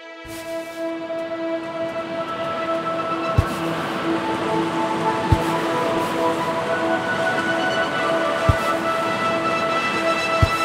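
Stormy-sea soundtrack: a steady rushing of wind and surf swells up under a sustained droning chord, with three deep booms spaced a few seconds apart.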